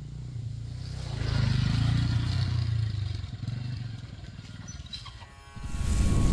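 Small commuter motorcycle engine running, growing louder about a second in and then easing off, as the bike rides up and slows to a stop.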